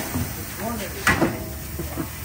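One sharp knock about a second in as a large low-profile tyre is handled onto a wheel on a tyre changer, with voices talking around it.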